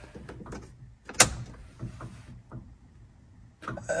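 Light clicks and knocks of something being handled, with one sharp click about a second in.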